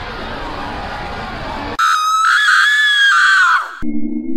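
Horror soundtrack effect: a dense, noisy dark drone breaks off abruptly about two seconds in, replaced by a loud, piercing, high-pitched scream that wavers for about two seconds and then falls away.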